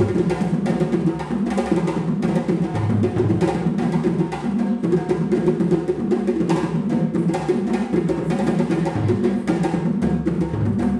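West African drums playing the Mendiani dance rhythm: a fast, unbroken pattern of hand-drum strokes over deeper bass-drum tones that change pitch.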